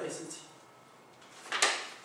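A short, sharp scrape with a click, lasting about half a second, comes about one and a half seconds in, between bits of a man's talk.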